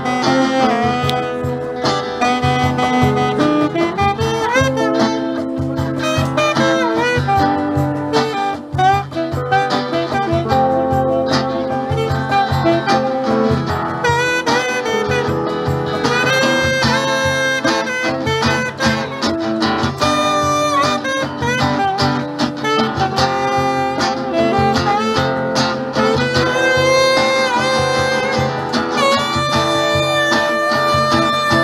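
A live blues band with a saxophone playing a melodic solo line over strummed acoustic guitar and a steady cajón beat.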